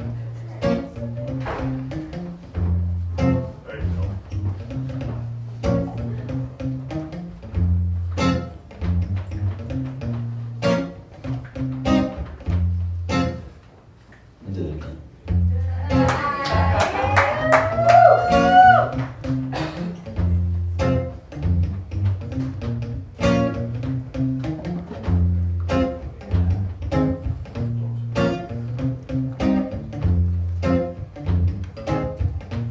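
Steel-string acoustic guitar played solo, picked notes over deep bass notes in a steady rhythm, with a brief pause just before the middle. A wordless voice rises and bends over the guitar for a few seconds about halfway through, the loudest moment.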